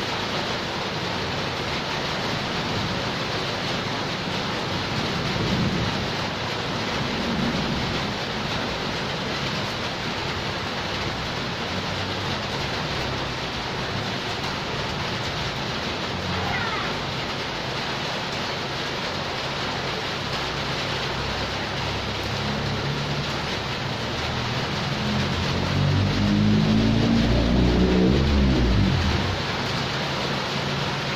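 Steady heavy rain falling on a paved yard and its puddles, a constant even hiss. Near the end a louder, lower sound with a wavering pitch swells up over the rain for a few seconds.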